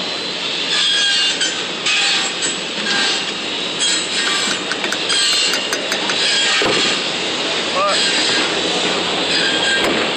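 Steady machinery noise of a construction site, with indistinct voices under it and a few light metal clicks.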